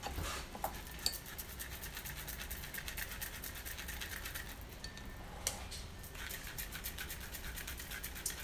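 A spoon scraping and rubbing raspberry puree through a small fine-mesh strainer, pressing out the seeds. It makes rapid scratchy strokes that thin out briefly a little after the middle, then pick up again.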